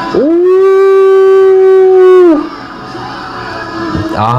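A man lets out one long, loud 'ooh' of excitement: his voice swoops up, holds a single steady note for about two seconds, then drops away. Concert music plays quietly underneath.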